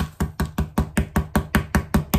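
A glitter-coated wooden silhouette rapped repeatedly against a cardboard box to knock off excess glitter: a fast, even run of sharp knocks, about six a second.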